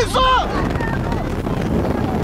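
Engine and road noise inside a Mitsubishi pickup's cabin as it accelerates hard, with wind rushing over the microphone.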